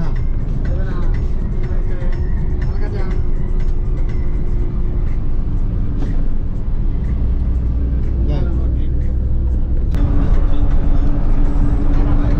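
Coach engine and road rumble heard from inside the cabin while driving at speed. The sound is a steady low drone that grows a little louder near the end.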